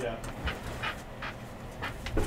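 A person's quiet breathing: a few short, soft breaths spread across the moment.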